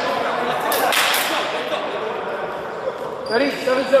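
Voices talking on an indoor handball court, with a few sharp slaps about a second in; near the end a voice calls out the score.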